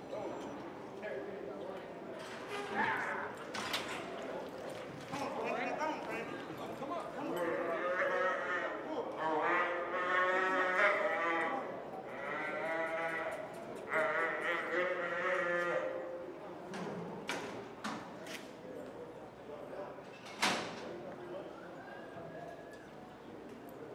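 A roped calf bawling in a series of four long, wavering cries while it is flanked and tied down.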